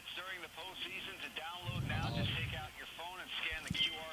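Indistinct voices talking, with no words clear enough to make out.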